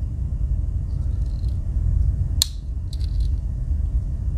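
Victorinox Spartan Swiss Army knife's reamer awl snapping shut against its backspring with one sharp metallic click about halfway through, followed by faint clicks of a thumbnail working the can opener's nail nick, over a steady low rumble.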